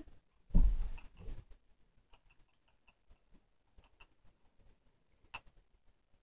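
A low thump about half a second in, then faint scattered clicks and ticks of a Spindolyn supported spindle being handled, with one sharper click near the end.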